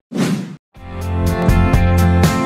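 A short whoosh transition sound effect that swells and fades out in about half a second. Just under a second in, background music with a steady beat begins.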